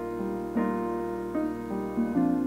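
Slow keyboard music, most like a piano: held chords, a new one struck about every second.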